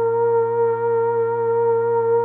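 DSI Tetra analog synthesizer patch holding one steady, sustained note with a slight regular wobble.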